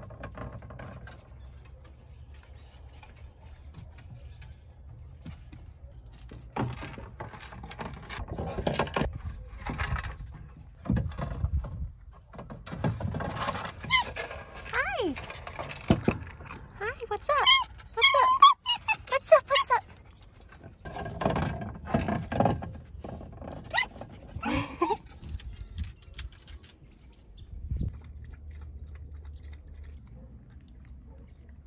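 A hard plastic treat ball being nosed and pushed around by a red fox on wire mesh and dirt, knocking and rattling in short spells. Around the middle come several seconds of high, sliding voice-like calls.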